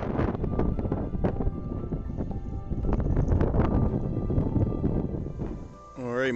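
Background music playing under loud, uneven crunching and rustling noise with many sharp clicks: footsteps on snow-covered ice and handling of a hand-held phone.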